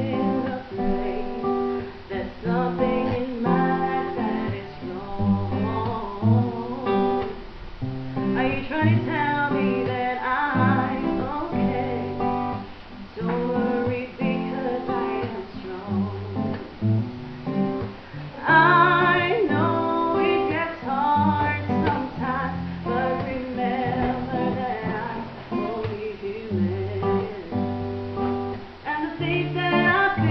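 Acoustic guitar strummed through the song's intro, chords changing every second or so.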